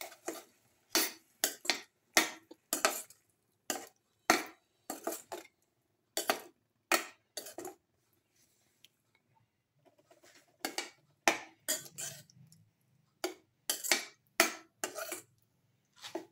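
Slotted steel spoon stirring a thick spinach-and-cauliflower curry in a pan, scraping and clinking against the pan about twice a second, with a pause of about two seconds midway.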